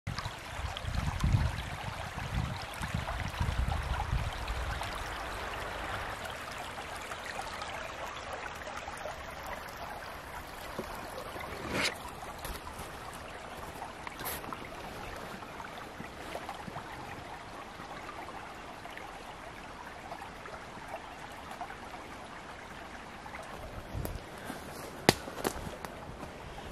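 Shallow creek rippling and babbling steadily over stones. Low rumbles in the first few seconds, and a few sharp clicks later on.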